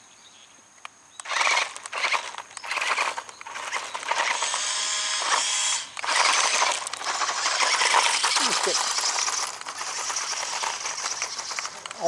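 Toy radio-controlled off-road buggy's small electric motor and plastic gearbox whirring as it drives over gravel. It starts in short bursts about a second in and runs more steadily from about four seconds on.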